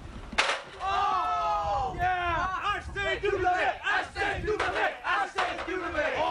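A single sharp crash of a wrestler's body landing about half a second in, followed by several young men yelling and whooping together.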